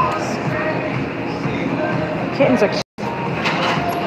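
Indistinct voices over steady background chatter, with no clear words, cut by a brief total dropout about three seconds in.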